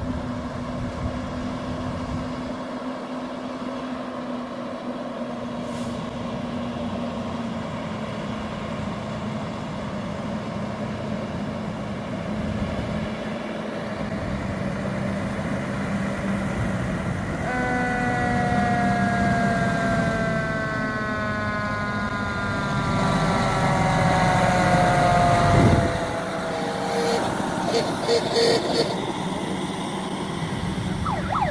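Fire engine running as it rolls slowly closer. About two-thirds of the way in, its siren sounds and winds slowly down in pitch over several seconds. Short, sharp bursts of sound follow near the end.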